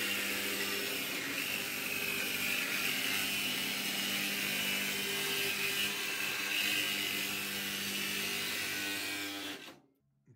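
Cordless reciprocating saw running steadily, its blade cutting down the corner of a steel gun safe. It stops suddenly just before the end.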